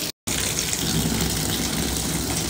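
Bathtub faucet running, water gushing steadily into the tub of soapy water. It cuts in a moment after the start.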